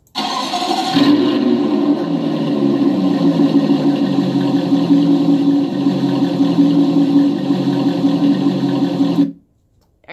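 A played-back recording of a car engine starting, busier in the first second and then running steadily. It cuts off abruptly about a second before the end.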